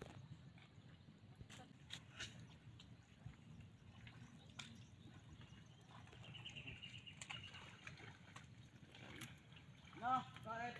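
Near silence: faint outdoor ambience over calm water, with a few soft clicks and a brief faint high note about two-thirds of the way in.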